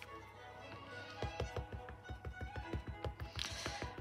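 Rapid soft tapping, about seven taps a second, starting about a second in: an ink pad being dabbed onto a rubber stamp mounted on a clear acrylic block. Quiet background music plays under it.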